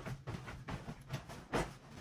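Soft irregular thumps and rustling of bedding as a person moves and bounces on a mattress, with a heavier thump about one and a half seconds in as she drops down onto the bed and pillows.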